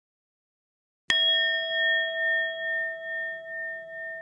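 A single bell ding sound effect for the notification bell of a subscribe animation. It is struck about a second in and rings on as a clear chime, with a slow pulsing waver as it fades.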